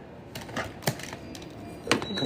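A few sharp, light clicks at uneven intervals, about four in two seconds, over a quiet background.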